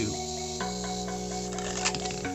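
Background music with held chords that change about half a second in, over a faint rubbing as a cardboard spinning top turns on a glass pot lid. A single click comes near the end.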